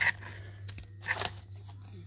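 Trading-card pack wrappers and packing paper crinkling and rustling as they are handled, with a few short crackles.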